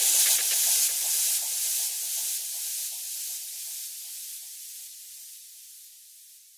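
Closing white-noise wash of a progressive house track after the drums stop: a steady hiss that thins out from the bottom up and fades away.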